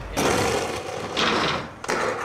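Skateboard wheels rolling hard over rough pavement, then the trucks grinding along a loading-dock ledge with a harsh scrape about a second in, and another scrape near the end.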